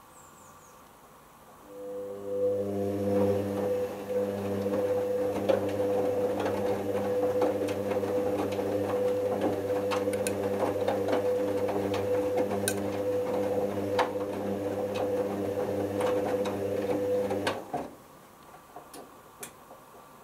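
Hoover Optima OPH714D washing machine turning its drum during the main wash. About two seconds in the drum motor starts with a steady hum while the wet load tumbles, and it stops abruptly near the end, leaving only faint sounds.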